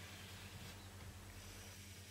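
Faint scratching of a pen drawing straight lines on paper, over a low steady hum.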